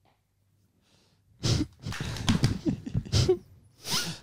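Near silence at first, then a person's vocal sounds from about a second and a half in: a sudden loud burst, a run of short voiced noises, and another burst near the end.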